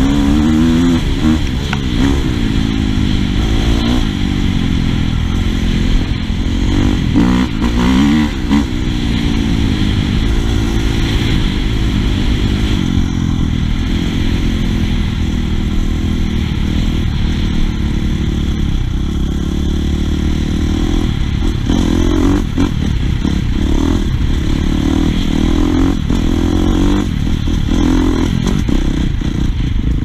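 Husqvarna FC450 dirt bike's four-stroke single-cylinder engine running under way. The revs rise and fall several times in the first few seconds and hold steadier later on.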